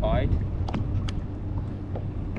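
Steady low rumble of wind and water with a faint steady hum, a brief voice-like sound at the very start, and a few sharp clicks.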